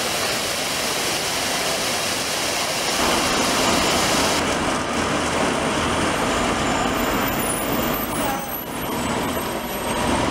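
City street traffic with buses running along the avenue: a steady noise of engines and tyres.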